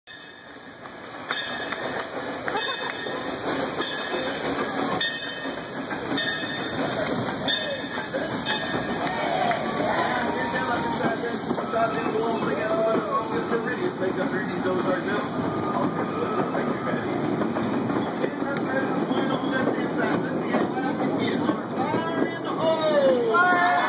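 Excursion train rolling across a trestle, its wheels clicking over the rail joints about once a second over a steady rumble. Riders' voices come in from about halfway through.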